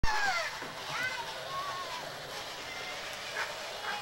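A young girl squealing and laughing in high gliding cries, over the steady crackle of a battery-powered toy motorcycle's plastic wheels rolling over dry grass and leaves. A short knock at the very start.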